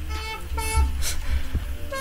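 Small Korg analog synthesizer playing a quick run of buzzy, horn-like notes whose pitch jumps between a few steps, with a brief hiss about a second in.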